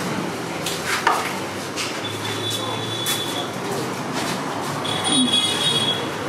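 Steady background noise with a few light clicks about a second in, and a faint high-pitched whine that comes twice.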